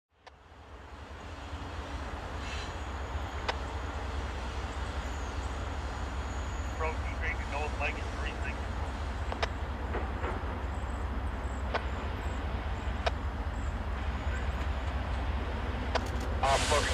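Distant diesel freight locomotive approaching: a steady low rumble that fades in at the start and slowly grows louder, with a few sharp clicks.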